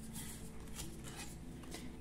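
Faint rustling and sliding of printed oracle cards being handled, with a few soft brushing sounds as a card is laid down and the next one picked up.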